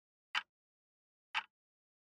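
A clock ticking slowly: three short, crisp ticks, one a second.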